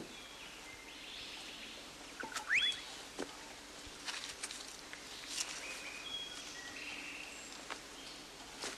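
Tropical forest ambience of birds calling: short whistled notes, and a quick rising whistle about two and a half seconds in that is the loudest sound. Scattered light clicks and rustles sit under the calls.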